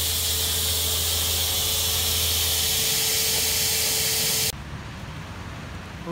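Small electric air blower running with a steady hiss and a motor whine, stopping abruptly about four and a half seconds in; quieter outdoor background follows.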